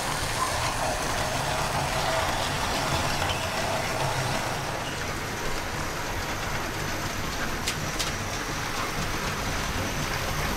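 OO gauge model goods train running on the layout's track, its wagon wheels and small motor making a steady rolling rumble. It is louder for the first few seconds, while the tank wagons pass close by.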